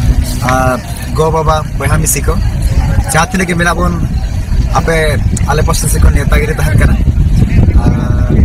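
A man talking over a heavy, uneven low rumble of wind buffeting the microphone.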